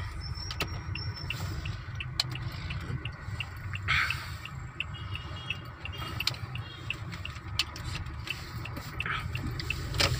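Car cabin noise while driving: a steady low engine and road rumble, with a series of faint short high ticks, a few each second, through most of it.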